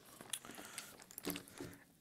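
Faint rustling and small clicks of a leather stick bag being handled as its flap is held open.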